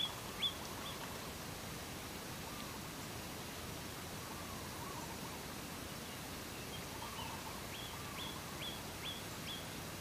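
Steady outdoor background hiss with a small bird chirping in short, quick rising notes, three near the start and a run of about five near the end, and fainter lower warbling calls in between.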